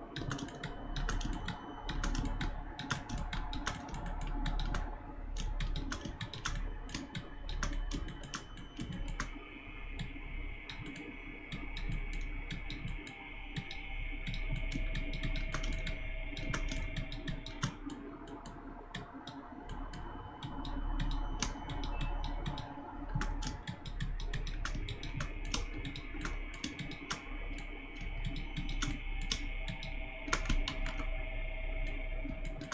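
Computer keyboard keys and mouse buttons clicking in quick, irregular runs throughout, over a steady low hum.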